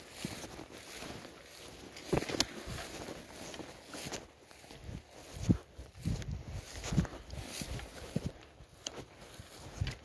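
Footsteps through dry grass, with rustling and irregular handling knocks; a few sharper knocks stand out, the loudest about five and a half seconds in.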